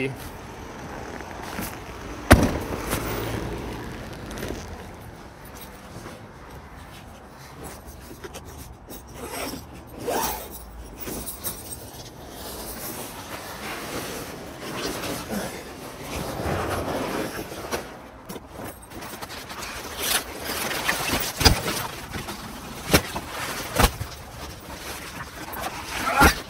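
A pop-up speed tent handled and set up: its fabric and clear plastic windows rustle and scrape as it comes out of its carry bag and is opened. A sharp click comes about two seconds in, and several more come in the last few seconds as the frame is pushed into place.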